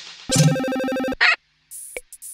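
Cartoon buzzer sound effect: a steady, ringing electronic buzz lasting under a second, cut off by a short blip, marking a disallowed point. A faint tick follows near the end.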